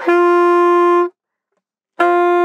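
Alto saxophone holding one steady note on D for about a second, then stopping, with a second note starting at the very end. It is an overtone exercise played without the octave key, where the strength of the breath alone decides which octave of D sounds.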